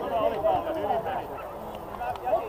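Several children's high voices calling and shouting at once during a youth football match, in short overlapping calls that rise and fall in pitch.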